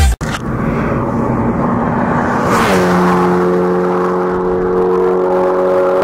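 Car engine running at speed; about two and a half seconds in its note swells briefly, dips a little in pitch and then holds steady.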